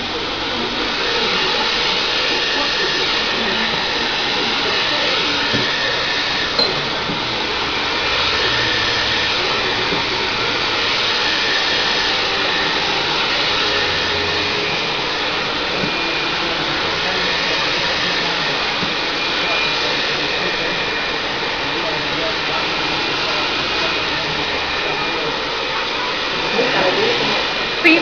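Handheld hair dryer running steadily at close range while blow-drying hair, a continuous rush of air with a faint high whine.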